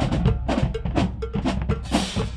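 Marching band percussion section playing: rapid drum strokes with bass drum and snares, crash cymbals ringing over them, and a repeated pitched hit.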